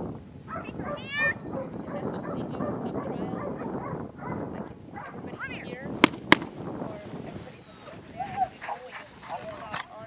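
A dog's short, high yelping barks at a few moments over a low murmur of voices, with two sharp clicks a fraction of a second apart about six seconds in.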